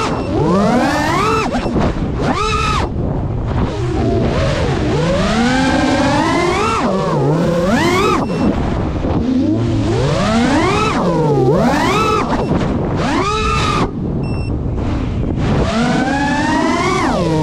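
FPV quadcopter's motors and propellers whining, the pitch sweeping sharply up and down over and over as the throttle is punched and cut through turns and rolls.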